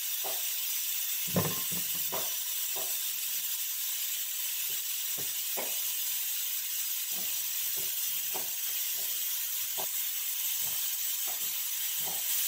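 A steady hiss, with soft scattered clicks and knocks of a knife cutting melon into slices over a salad bowl; one louder knock about a second and a half in.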